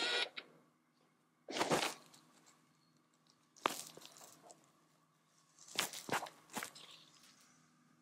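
Handling noise from a handheld camera being moved about: a handful of short rustles and bumps at irregular intervals, with near quiet between them.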